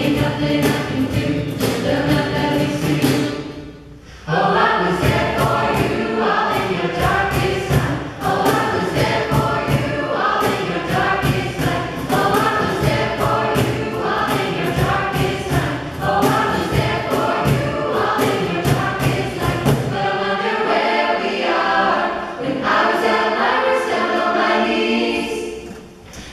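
A youth jazz choir singing through microphones over a steady beat. The singing drops away briefly about four seconds in and again near the end.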